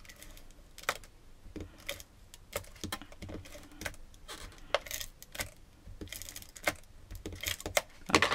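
Irregular light clicks and short scrapes of a plastic adhesive tape runner being pressed and drawn across a small piece of folded cardstock on a craft mat.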